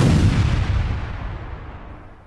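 A deep cinematic boom hit that ends an electronic countdown intro as the timer reaches zero, its low rumble fading away over about two seconds.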